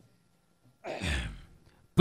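A man sighs once into a stage microphone about a second in: a short breathy exhale with a low puff of air on the mic, lasting about half a second.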